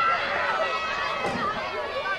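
Several people shouting and calling over one another in high voices during play, with no single clear speaker.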